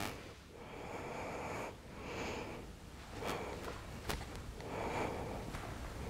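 A woman breathing slowly and audibly through the nose while holding a yoga bridge pose: several quiet, drawn-out inhales and exhales. A couple of faint clicks come about three and four seconds in.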